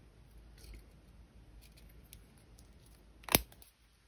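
Faint handling of copper wires, then a single sharp click about three seconds in as a padded jewelry cushion clamp closes on the wire ends.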